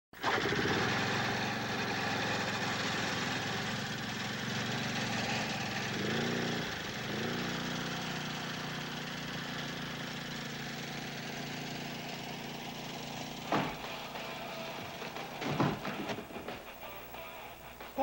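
A small petrol engine, like a lawn mower's, running steadily under film score music, wavering in pitch briefly about a third of the way in. There are two sharp knocks near the end.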